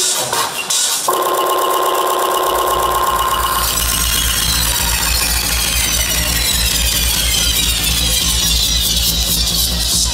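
Electronic dance music from a DJ set, played loud over a festival sound system: a buzzy synth chord about a second in, then a deep bass line comes in and a high sweep falls slowly in pitch through the rest.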